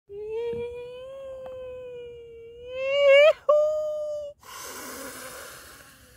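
A man's voice holding one long, high, wordless note that rises slightly in pitch, swells loudest about three seconds in and breaks off briefly. It is followed by a long breath blown out through pursed lips.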